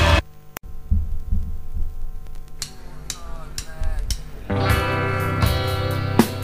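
Rock band music at a song change: the loud previous song cuts off just after the start, there is a click, then a sparse opening of low drum pulses, a few high cymbal taps and some sliding guitar notes, before the full band comes in with guitar chords and drums about four and a half seconds in.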